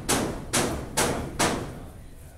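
Hammering from roof repair work: four even blows, a little over two a second, each with a short ringing tail, stopping about a second and a half in.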